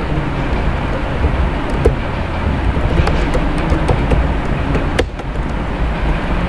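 Scattered computer keyboard and mouse clicks, a few sharp taps at irregular intervals, over a steady low rumble and hiss.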